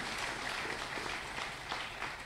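Faint audience applause, an even spread of clapping with no voice over it.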